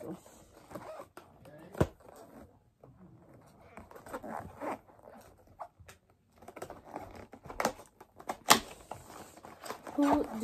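Cardboard gift box and its packaging being handled and opened: rustling and tearing, with a few sharp taps or snaps. One comes about two seconds in, and the loudest comes near the end.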